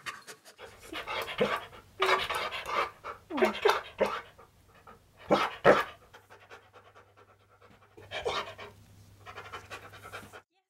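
Husky panting in irregular bursts, with a couple of short falling vocal sounds about three and a half seconds in.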